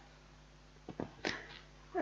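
Quiet pause in a small room with two faint clicks a little under a second in, then a short soft breathy noise.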